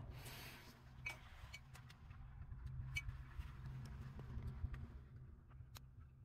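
Faint handling of painting materials: a few small clicks and taps of a brush against a plastic paint palette, over a steady low hum.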